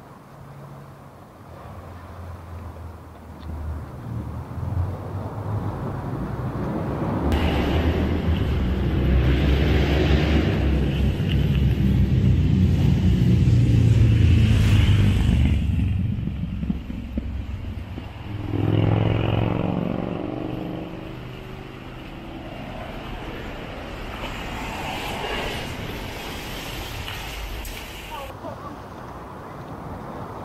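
Road traffic passing close by: a vehicle's engine and tyre rumble swells to a peak about halfway through and fades. A second engine passes a few seconds later with a sliding pitch.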